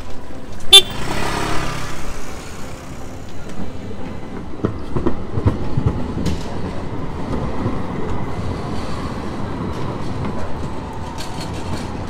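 A short, loud horn toot about a second in, then a tram rolling past on its rails with a steady low rumble and some clatter, over street noise.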